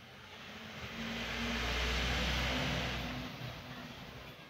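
A road vehicle passing by: a rumble and hiss that swells to a peak about two seconds in, then fades away.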